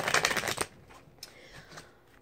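A deck of oracle cards being shuffled by hand: a quick riffle of rapid card clicks over about the first half-second, then a few faint ticks as the cards settle.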